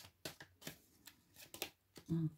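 A few faint, short clicks and rustles of tarot cards being handled.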